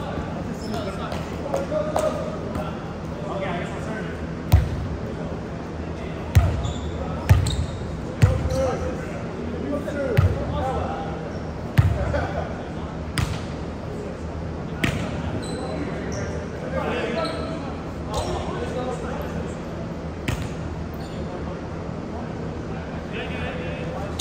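A volleyball being hit and bouncing in a reverberant gymnasium: a run of sharp slaps, about eight of them between roughly four and fifteen seconds in, over a steady low hum.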